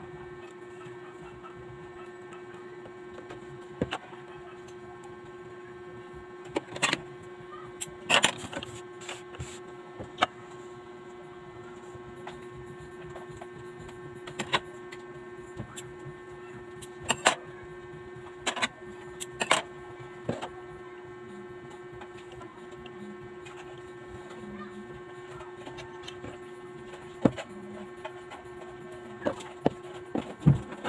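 A steady mid-pitched electrical hum, with a dozen or so sharp clicks and taps scattered over it. The taps come in small clusters, the loudest about seven to eight seconds in, around seventeen to twenty seconds in, and again near the end.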